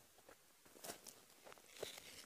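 Near silence: faint background with two soft clicks, one about a second in and one near the end.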